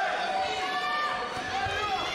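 Several raised voices in a sports hall, shouting and calling out over one another.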